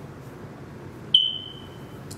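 A single high-pitched beep about a second in, starting sharply and fading away over most of a second.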